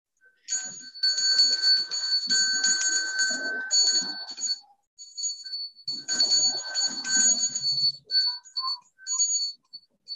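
Small metal hand bell rung with rapid clapper strikes, a clear high ringing in two long stretches of about four and two seconds, then a few scattered short rings.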